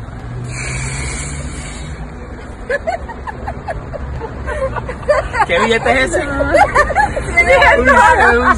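A woman laughing loudly and exclaiming in excitement, building from about five seconds in, over steady street noise with a vehicle running in the background at first.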